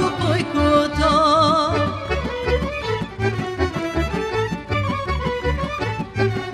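Folk band music played live on violins, double bass, accordion and clarinet, over a steady bass beat. About a second in, one held note swings in a wide vibrato before the melody moves on.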